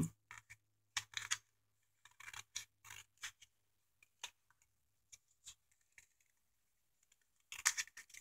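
Long flat-bottomed scissors trimming a cardboard candy box: faint, irregular snips and clicks of the blades cutting through the board.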